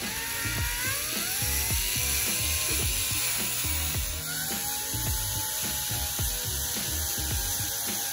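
DeWalt cordless drill spinning an 800-grit sanding pad against a plastic headlight lens: a steady motor whine over the hiss of the sanding. The whine climbs in pitch twice, about half a second in and again about four seconds in. Background music with a steady beat runs underneath.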